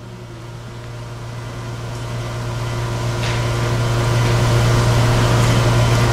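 Steady electrical hum with hiss, swelling gradually louder through the pause.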